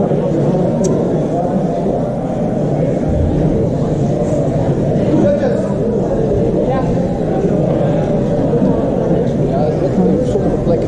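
Indistinct voices of several people talking at once, a steady murmur of conversation with no clear words.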